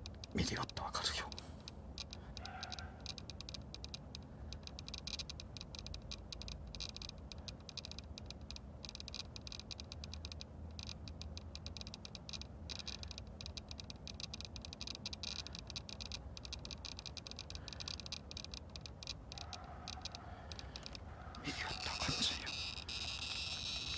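A steady, dense chorus of fast ticking calls from night-calling creatures, with a brief louder sound about half a second in.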